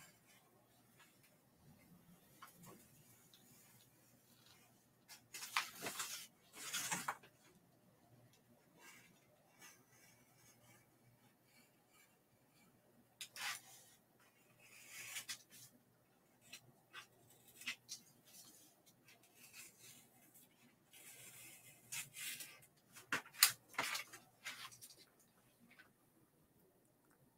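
Faint, intermittent scratching and rustling of a craft knife cutting a printed foam board cutout and the board and paper being handled, in short clusters about five, thirteen and twenty-two seconds in.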